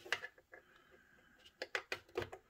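A few light clicks and taps of small objects being handled: one or two near the start and a quick run of three or four near the end.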